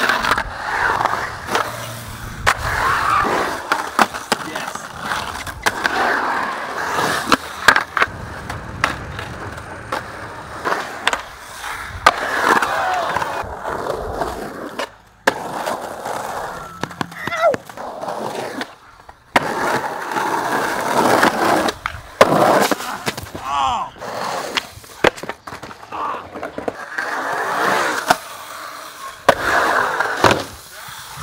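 Skateboard wheels rolling and carving through concrete bowls and transitions, broken by frequent sharp clacks of the board on coping and on landings.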